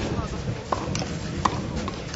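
Tennis ball being struck by rackets and bouncing on a clay court during a rally: a few sharp knocks at uneven intervals over a low crowd murmur.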